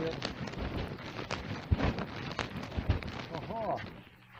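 A recorded audio clip playing back: a rough, noisy background with irregular knocks and rustles, and a brief voice near the end.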